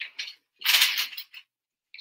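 Handling noise from a curling wand being worked into a section of a mannequin's hair: a couple of faint ticks, then a short rustling burst about half a second in.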